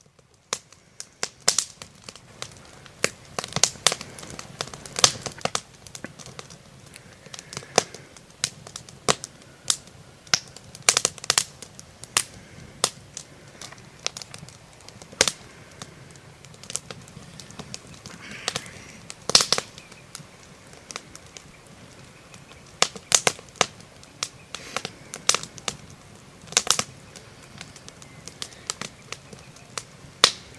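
Wood campfire crackling and popping under meat grilling on the grate: irregular sharp snaps, several a second, some much louder than others, over a faint low rumble of the fire.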